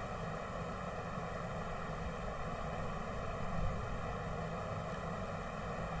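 Steady background hiss with a faint, even hum: room tone in a pause in the talk.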